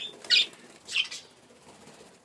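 Budgerigars chirping: two short, high calls in the first second.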